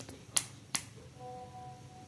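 Two sharp clicks about 0.4 s apart, like finger snaps, followed by a faint steady hum.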